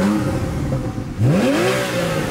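Porsche 911 Carrera S's naturally aspirated flat-six revved twice while standing, heard from inside the cabin. The first blip falls back right at the start, and a second rev rises about a second in and drops back to idle.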